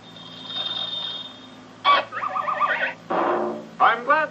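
Cartoon sound effects played through a computer's speakers. A steady high ringing tone lasts about a second and a half, then a yelling cry with a quickly warbling pitch, then a short noisy crash about three seconds in, the sound of the rider being thrown to the ground.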